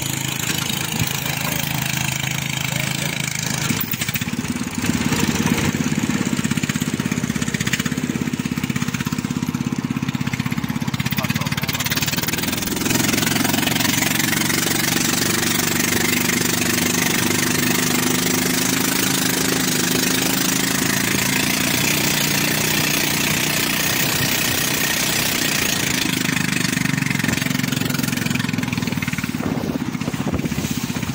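Rabeta long-tail boat engine running steadily while the boat is under way, a constant drone. It gets louder about five seconds in.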